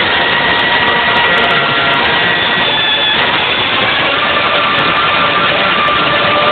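Wind band playing long held chords, so loud on the recording that the music comes through as a harsh, distorted wash with the sustained notes standing out in it.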